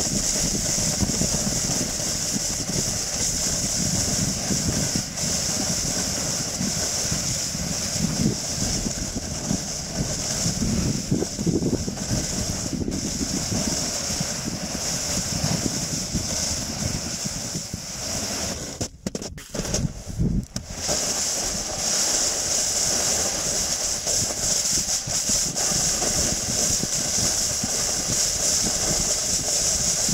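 Snowboard sliding over snow, heard from a camera on the board: a steady hiss of the base and edges on the snow over a low rumble. The noise drops briefly about two-thirds of the way through.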